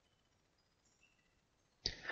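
Near silence, with only a few faint, brief high-pitched tones.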